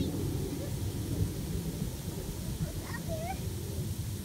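Wind buffeting the microphone, a continual low rumble, with a few short high chirping calls about three seconds in.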